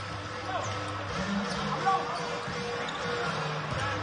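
Basketball arena ambience: a basketball being dribbled on the hardwood court over steady background music and crowd voices.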